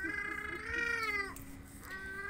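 An animal's drawn-out pitched call, heard twice: one long cry for the first second or so, then a second one starting near the end.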